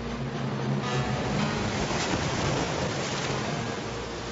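Cartoon sound effect of rushing, churning water, under background music.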